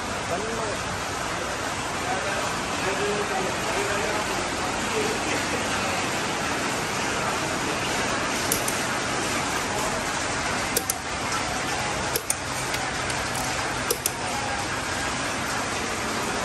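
Steady workshop background noise, with a few sharp metallic clicks in the second half as a lug wrench works a car's wheel nuts.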